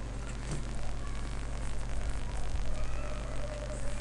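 Steady low electrical hum with hiss: the background noise of the recording while nothing else sounds.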